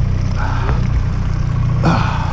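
Yamaha 9.9 kicker outboard running steadily at trolling speed, a constant low engine hum.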